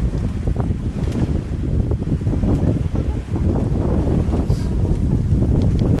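Wind buffeting the camera microphone: a heavy, irregular low rumble with a few faint clicks.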